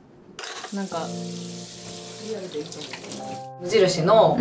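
Water running from a kitchen tap, a steady hiss that cuts off suddenly near the end, with background music playing over it.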